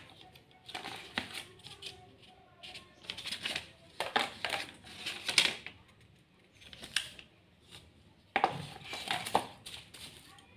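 Unboxing handling noise: rustling of plastic wrap and a paper leaflet, with clicks and light knocks as a phone charger and its cable are picked up and put down. It comes as a string of short, irregular bursts.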